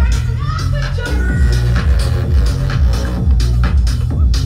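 Loud electronic dance music with a heavy, pulsing bass beat.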